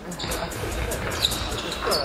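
A basketball bouncing, with gym voices and a brief high squeak about a second in.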